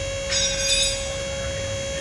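Battery-powered double-acting hydraulic pump running with a steady whine and hum, cycling the gravity tilt cylinders to push air out of the system. A hiss of fluid joins about a third of a second in and lasts over a second.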